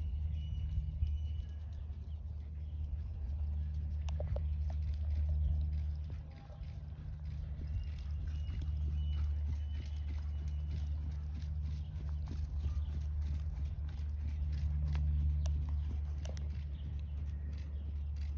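Horse's hooves beating on sand arena footing as it trots, faint and soft, over a steady low rumble.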